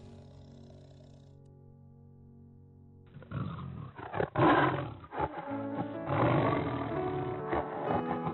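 Quiet background music with held tones, then from about three seconds in a cheetah calling in several rough bursts over the music, the loudest near the middle.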